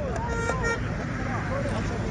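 A vehicle horn gives one short, steady toot of about half a second, near the start, over the chatter of a crowd.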